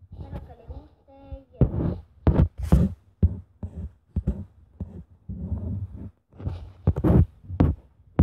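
An irregular run of short, loud thumps and breathy puffs close to the microphone, mixed with a few brief non-word vocal sounds.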